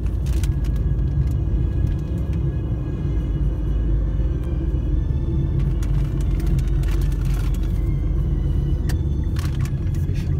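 Steady low rumble of a car being driven, heard from inside the cabin: engine and road noise, with a few faint brief clicks or rustles later on.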